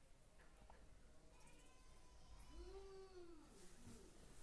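Near silence, with one faint drawn-out animal call about halfway through that rises and then falls in pitch.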